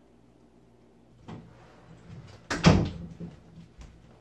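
Quiet room tone, then a few light knocks and one much louder thump about two and a half seconds in, with small clicks near the end.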